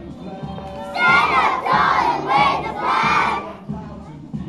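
A large group of children's voices shouting out together in about four loud bursts, starting about a second in.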